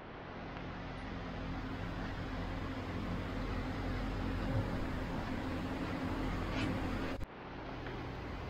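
Steady hum and hiss of workshop room noise, with electric fans running, and a couple of faint brief sounds about four and a half and six and a half seconds in. The sound drops out abruptly shortly before the end, then resumes.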